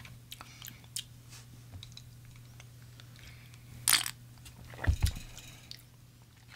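Faint wet mouth and lip clicks of someone tasting a sip of a drink, with a short breath about four seconds in and a soft low knock about a second later, over a steady low hum.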